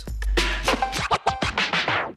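The podcast's closing theme music: a beat of quick, choppy strokes over a steady deep bass.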